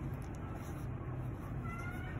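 Steady low background hum, with a faint, short high-pitched sound near the end.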